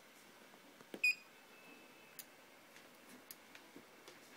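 Autel MaxiDAS DS708 scan tool giving a short electronic touchscreen beep with a click about a second in, as a menu item is tapped and it starts establishing vehicle communications; a few faint ticks follow.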